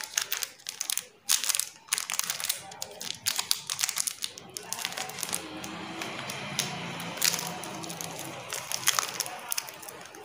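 Candy bar wrappers crinkling and rustling as they are handled, in quick irregular crackles, with music and a voice underneath.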